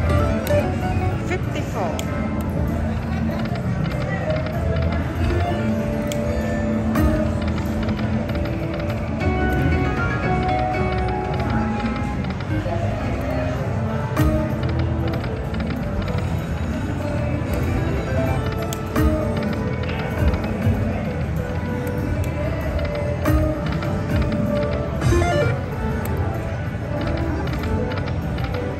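Slot machine game music, a run of chiming melodic notes with clicking sound effects, over the chatter of a casino floor.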